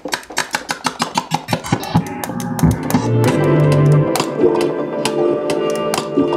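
Critter & Guitari Organelle synthesizer being played over the track in progress: a rapid stream of short, plucked-sounding notes, then from about three seconds in held chords over a low bass note.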